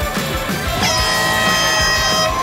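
Background music with a steady beat; about a second in, an air horn sounds one long blast over it, the kind used to start a race wave.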